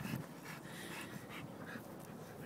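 Faint, irregular breathing and snuffling of a pit bull with her head down in a squirrel hole.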